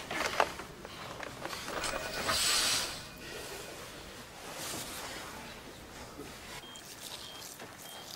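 A breathy hiss swells for under a second about two seconds in. Near the end a hospital patient monitor gives short electronic beeps, all at one pitch.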